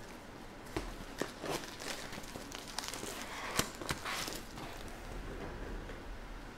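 Trading cards and foil pack wrappers being handled on a table: a run of rustles and crinkles with several sharp clicks and taps, busiest in the middle, the loudest click a little past halfway.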